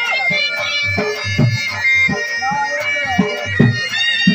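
Folk dance music: a reedy pipe plays a melody over a steady held drone, and a drum beats along.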